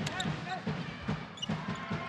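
Basketball being dribbled on the court floor: about five even bounces, roughly two and a half a second, over steady arena crowd noise.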